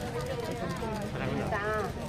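Several people talking close by in a small crowd, with women's voices the most prominent.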